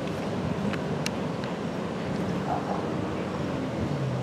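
Diesel locomotives of an approaching CN freight train running in the distance, a steady low drone with a few faint clicks.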